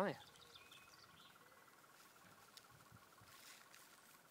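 Quiet outdoor background: a faint steady high-pitched hum, with a few faint short chirps.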